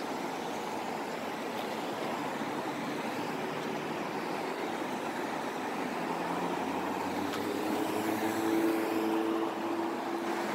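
Steady road traffic: cars passing on a multi-lane city street. From about seven seconds in, a passing vehicle's hum grows and is loudest around eight to nine seconds in.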